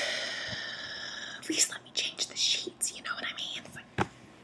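A person whispering: a long breathy hiss, then about two seconds of quick whispered words, with a short sharp click at the very end.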